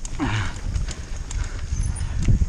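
Mountain bike rattling and knocking as it rolls fast over a bumpy dirt singletrack, over a continuous low rumble of wind and trail noise on the helmet-mounted camera.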